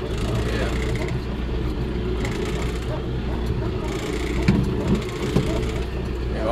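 Engine of a John Deere utility vehicle running steadily as it drives along, with a few short knocks and rattles about four and a half seconds in.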